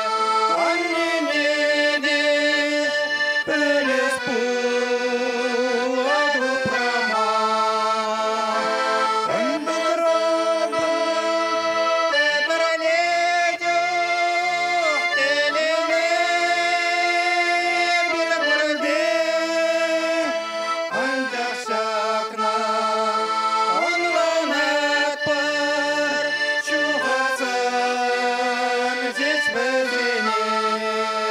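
Button accordion playing a folk song with full chords, a man singing along with it into a microphone.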